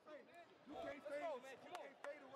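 Voices talking in a team huddle, several speaking over each other with no clear words.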